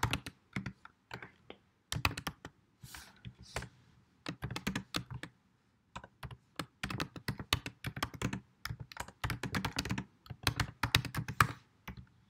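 Typing on a computer keyboard: quick runs of key clicks in bursts, with short pauses between them.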